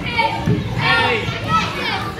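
A group of children shouting and squealing excitedly at once during a lively game, with overlapping high-pitched cries peaking about a second in and again near the end.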